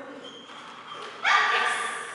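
A dog barks once, a little over a second in, the bark ringing out in a large indoor hall.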